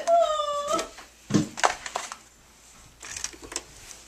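A drawn-out high whining voice sound for just under a second, then a few sharp knocks and faint clicks from a cardboard box being handled.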